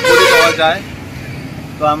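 A vehicle horn honks once, loud and steady in pitch, for about half a second at the start, over street background noise; a man's voice resumes near the end.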